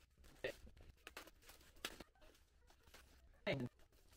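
Faint rustling and soft ticks of clear plastic wrap being pulled off a replacement glass panel, with a short voiced sound from the man about three and a half seconds in.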